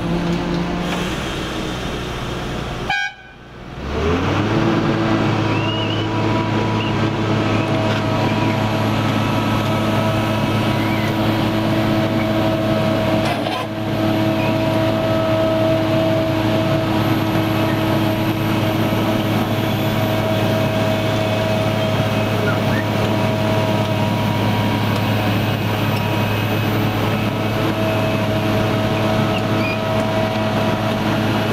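Engine of a DESEC TL 70 turnout-laying machine running steadily, a loud hum with a clear pitch. About three seconds in it drops out briefly, then rises back up to a higher steady note that holds.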